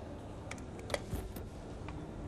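A few sharp clicks over a low steady hum, the loudest about a second in, as the catch of a pendulum skid-resistance tester is released and its arm swings.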